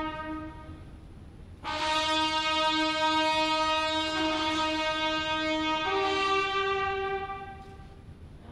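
Brass instruments playing long held notes, a ceremonial fanfare. One note dies away at the start, a new one enters about one and a half seconds in, steps up in pitch about six seconds in, and fades near the end.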